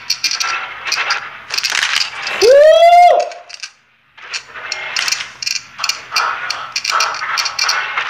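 Rapid, irregular sharp clicking and rattling, broken about two and a half seconds in by one loud rising, then held, tone, and a brief drop to silence about four seconds in.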